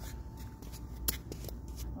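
Faint rustling and scattered small clicks over a low rumble, with one sharper click about a second in.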